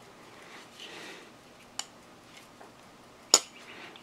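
Folding flipper knife being closed by hand: a faint metallic click about two seconds in, then a sharp metal click near the end as the blade snaps shut into the handle, with light handling rustle between.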